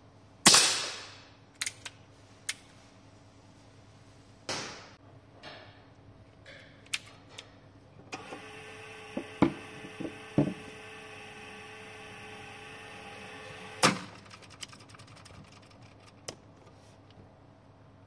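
Umarex Colt Peacemaker .177 CO2 pellet revolver fired twice, about four seconds apart, each a sharp pop, with small clicks between the shots from cocking the single-action hammer. Then an electric target-carrier motor whirs steadily for about six seconds and stops with a clunk.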